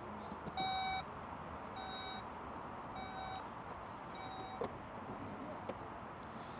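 Porsche Taycan power trunk lid closing after its close button is pressed: four warning beeps about a second apart, the first the loudest, then a short knock near the end as the lid shuts.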